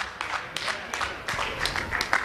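Scattered hand clapping from a congregation, a quick irregular run of claps.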